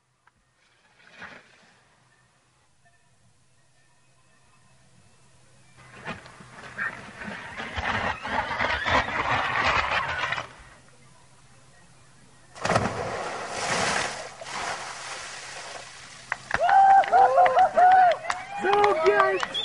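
A stunt rider's run down a wet plastic water slide and off a jump ramp: a rushing noise builds and fades, then a loud rush of noise as he lands in an inflatable pool. Near the end, people shout and whoop.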